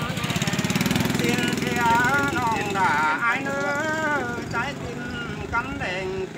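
Unaccompanied Tai (Thái) folk singing: a single voice in a slow, sliding chant with held, wavering notes. A small engine runs underneath during the first second or so.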